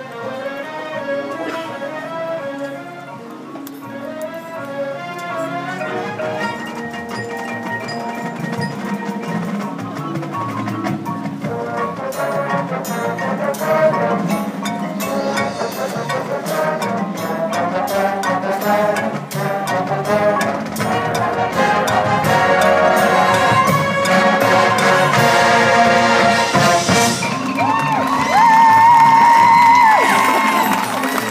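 High school marching band playing, brass and percussion, building steadily in volume to a loud full-band passage near the end.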